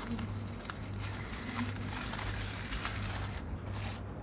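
Tissue paper crinkling and rustling as it is unwrapped from a small eye loupe, a dense run of crackles that dips briefly just before the end.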